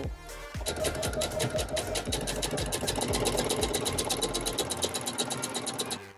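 Electric sewing machine stitching at a fast, even rate, about nine needle strokes a second, starting about half a second in, with background music.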